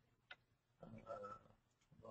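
Near silence: room tone, with a faint single click about a third of a second in and a brief faint sound around the middle.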